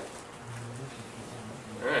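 A brief, faint, low hummed murmur from a person about half a second in, like a quiet "mm" of agreement, over room tone; near the end a man says "all right".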